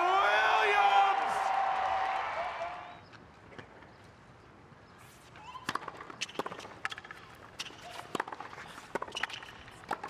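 A voice fades out over the first three seconds, followed by a quiet stretch. From about five seconds in comes a tennis rally: sharp racket strikes on the ball and ball bounces on a hard court, about twice a second.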